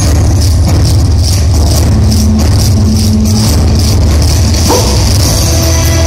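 Loud yosakoi dance music played for the team, heavy on bass, with a steady percussive beat.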